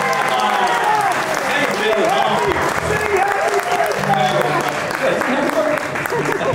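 Audience applauding, with people's voices over the clapping.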